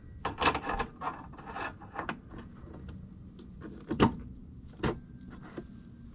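Hand work on a snowmobile's drive shaft: metal parts rubbing and scraping as the small brass bearing holder is worked into place, with two sharp clicks about four and five seconds in.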